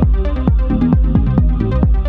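Electronic techno music: a steady kick drum about twice a second, each hit falling in pitch, over a deep bass and short repeating synth notes.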